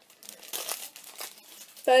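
Plastic packaging crinkling and rustling as it is handled, a string of light, irregular crackles, before a voice comes in at the end.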